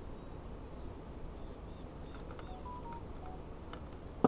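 Steady, low outdoor background noise, with a few short, faint whistled notes of different pitch around the middle and a couple of faint clicks near the end.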